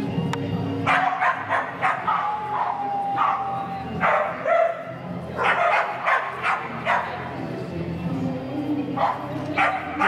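Australian Kelpie barking and yipping repeatedly in short sharp bursts while held in a sit at the start line, with a drawn-out whine about two seconds in. Background music plays underneath.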